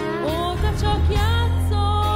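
A woman singing a pop-blues song over backing music with a heavy steady bass. Her voice slides up and settles into one long held note about halfway through.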